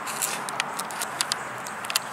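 Footsteps on dry ground: a run of light, irregular clicks and crackles over a steady hiss.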